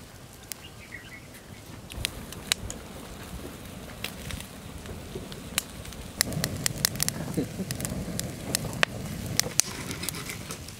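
Open wood fire crackling, with sharp pops scattered through and coming more often in the second half.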